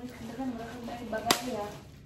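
Foil lid being peeled off a plastic yogurt cup, with one sharp snap about two-thirds of the way through as it comes free. A quiet voice murmurs under it.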